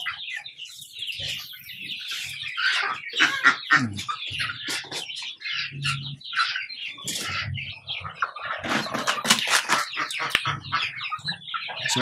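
A flock of Rhode Island Red hens clucking and calling as they feed, with scattered short clicks and rustles.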